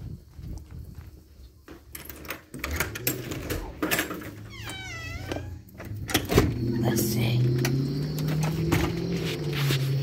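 Handling clicks and knocks while moving through the house, a short high squeak about five seconds in, then, from about six seconds on, a louder low engine drone from outside, steady and rising slowly in pitch.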